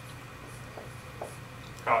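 A dry-erase marker writing on a whiteboard in a few short, faint strokes, over a steady low room hum.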